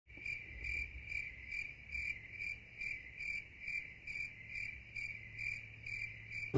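Crickets chirping in a steady rhythm, about two to three short, high chirps a second, fairly faint.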